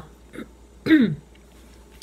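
A woman clearing her throat once, a short sound falling in pitch about a second in.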